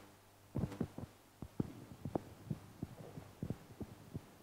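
A string of irregular dull thumps and knocks, a dozen or so over about three seconds, starting about half a second in, over a steady low hum.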